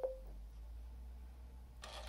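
A single sharp click, then a steady low electrical hum that stays on: the Furby's add-on Bluetooth speaker switching on just before it talks.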